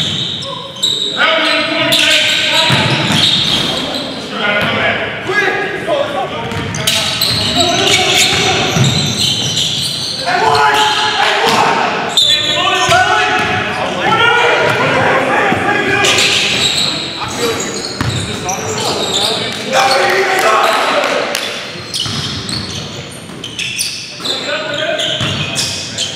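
Basketball game in a gym: a ball bouncing on the hardwood court among people's voices, all echoing in a large hall.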